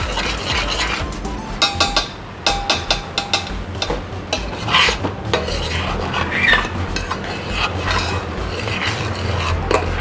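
Metal spoon stirring a thick cocoa-and-cream mixture in a stainless steel pot, scraping and clicking against the pot's sides and bottom in irregular strokes.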